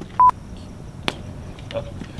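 A short electronic beep just after the start, then a campfire crackling, with one sharp pop about a second in.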